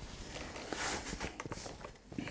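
Light taps and small clicks of fingers on a smartphone's touchscreen as it lies on a wooden desk, with a brief soft hiss about three quarters of a second in.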